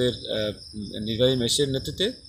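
Crickets chirring in a steady, high-pitched drone under a man's voice as he talks.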